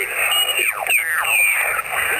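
Yaesu FT-817 transceiver's speaker receiving 14 MHz (20 m) single-sideband signals: garbled, off-tune sideband voices and whistles whose pitch sweeps down again and again, squeezed into a narrow, tinny radio bandwidth.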